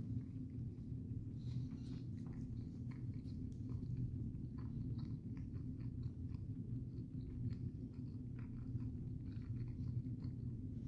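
A man chewing a mouthful of smash burger, with many small soft clicks from his mouth over a steady low background hum.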